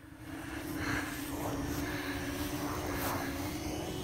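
Racing quadcopter's small electric motors giving a steady hum, two close tones held level over a light hiss, growing a little louder after the first half second.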